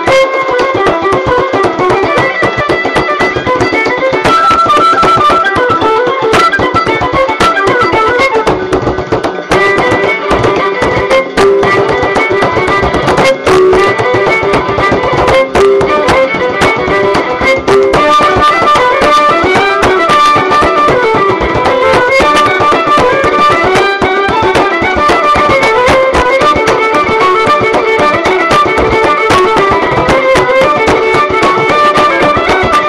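Bodhrán beaten in a fast, steady rhythm, playing along with a recording of a fiddle-led Irish traditional tune.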